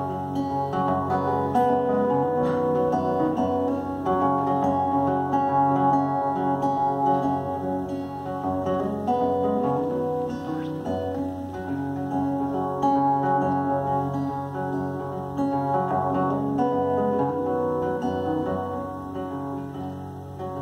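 Acoustic guitar played solo, an instrumental passage of picked and strummed notes that ring over one another at a steady level.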